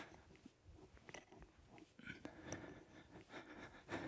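Near silence, with faint breaths and small scattered clicks close to a headset microphone during an arm-swinging exercise.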